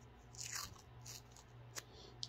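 Faint rustling of a piece of medical tape being handled, about half a second in, with a small sharp click near the end.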